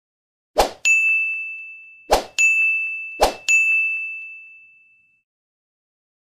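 Sound effects of an animated subscribe graphic: three short sharp hits about a second apart, each followed at once by a bright ding that rings out and fades, the last one dying away about five seconds in.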